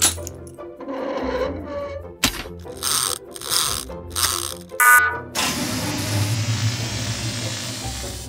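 Produced sound effects of a gearbox being fitted into a toy robot's chest and the robot powering up: a run of clanks and short mechanical whirring strokes, a brief electronic beep about five seconds in, then a long steady hum and hiss that slowly tapers off, all over background music.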